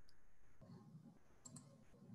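Near silence: faint room tone with a few soft clicks, one near the start and two close together about a second and a half in.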